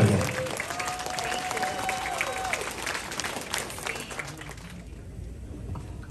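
An indoor audience applauding, with a held voice-like tone over it early on; the clapping dies away about five seconds in.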